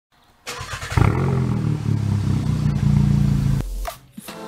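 Engine revving: it starts sharply about half a second in, the revs rise and fall, then hold steady before cutting off abruptly near the end.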